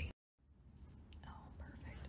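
A scrap of speech cut off abruptly into a moment of dead silence, then faint room tone with a soft whisper near the end.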